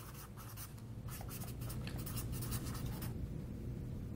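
Pens scratching on paper as several people write, a quick run of strokes that stops about three seconds in, over a low steady room hum.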